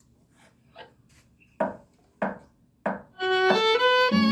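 Faint handling noise, then three short knocks about half a second apart. About three seconds in, a violin starts a bowed melody with long, held notes.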